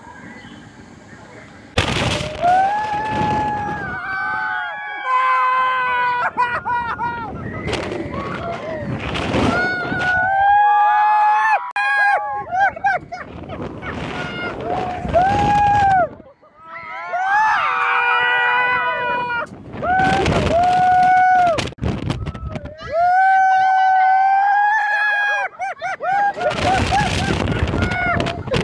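Riders screaming and whooping on a swinging pendulum thrill ride: many held screams of a second or two, in several voices at once. Rushes of wind noise on the microphone come back roughly every six seconds as the ride swings.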